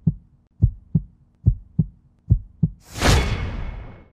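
Heartbeat sound effect in a logo intro: pairs of low thumps, one pair about every 0.8 seconds, over a faint steady hum. Near the end a loud noisy whoosh swells up and fades, then cuts off.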